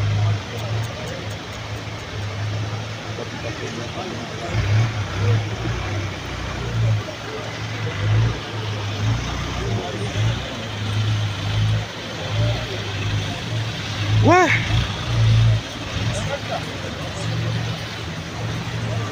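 Road traffic in floodwater: a steady wash of noise with a low rumble that swells and fades, and indistinct voices. A short shout rings out about 14 seconds in.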